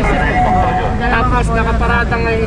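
People talking and arguing over a steady low rumble of street noise.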